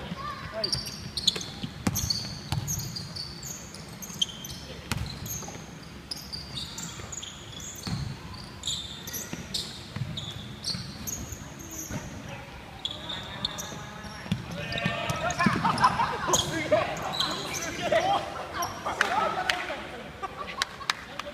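A basketball being dribbled, thumping repeatedly on a hardwood gym floor, with sneakers squeaking briefly and often as players run the court. Players' voices shout and call out over the second half, loudest from about 15 s on.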